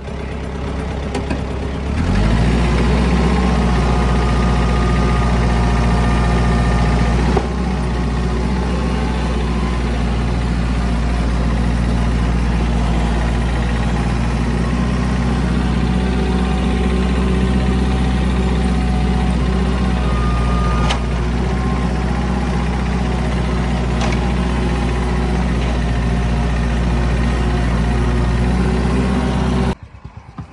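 Engine of the machine lifting a heavy pile of lumber offcuts, running steadily with a deep hum; it picks up about two seconds in, eases slightly a few seconds later, and cuts off suddenly near the end.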